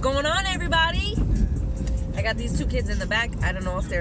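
A woman talking in a moving car, over the steady low rumble of the car on the road.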